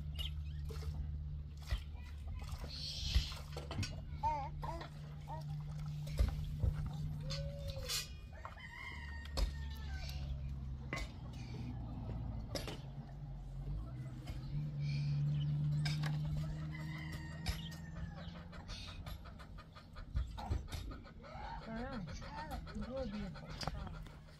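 A rooster crowing twice, about nine and seventeen seconds in, over a low steady hum, with scattered clicks and knocks.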